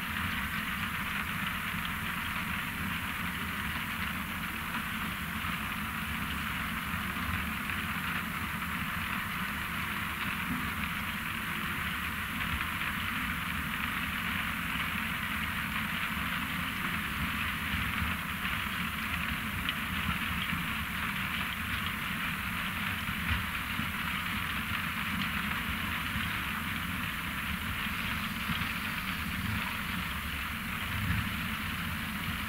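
ROPA Maus 5 sugar beet cleaner-loader working steadily: a low engine drone under a continuous rushing rattle of beets running through the cleaning rollers and up the loading conveyor into a truck.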